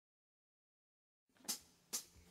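Silence, then two short sharp clicks about half a second apart near the end, a count-in just before the song starts.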